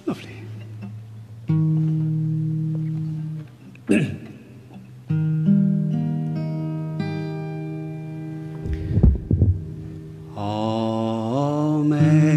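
Acoustic guitar: chords strummed and left to ring, the first about a second and a half in and the second about five seconds in, with short knocks of the instrument being handled between them. Near the end a man's voice comes in with a held note that slides upward.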